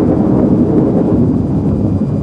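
A dramatic rumbling sound effect: a loud, steady deep rumble with no words or tune in it.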